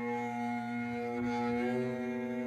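Double bass played with the bow, holding one long sustained note, with a second, higher note joining in about one and a half seconds in.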